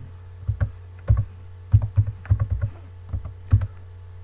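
Computer keyboard being typed on, about a dozen key clicks in uneven clusters as a word is typed out.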